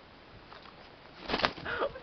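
White rooster lunging at a hand, a loud burst of wing flapping about a second and a half in, followed at once by a short cry.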